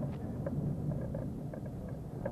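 Steady low hum of a car's engine and tyre noise, heard from inside the moving vehicle with a side window down.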